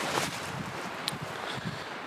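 Wind noise on the camera microphone, with faint rustles and a few light ticks as the camera is moved among branches.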